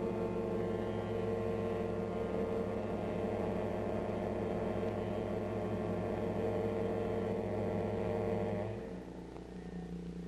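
Suspense film score: a sustained, droning chord with wavering tones above it. Near the end it drops suddenly to a quieter, thinner held chord.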